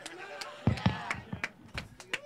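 Scattered handclaps from a few people, sharp and irregular, with a couple of dull thumps just under a second in, over faint chatter.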